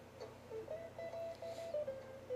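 Faint background music: a slow melody of held single notes stepping between a few pitches.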